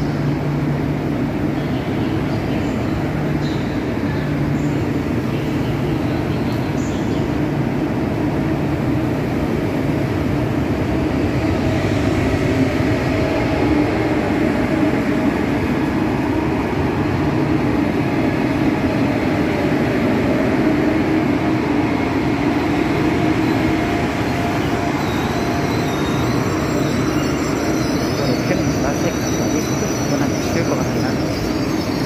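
KTX-Sancheon high-speed train moving slowly alongside the platform as it pulls out, a continuous rumble of running gear and traction equipment with a steady low hum. It swells slightly midway, and a thin high squeal joins near the end.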